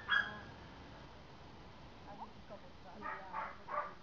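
Short, loud voiced calls: a pair right at the start, then three in quick succession near the end, with a few faint chirps between.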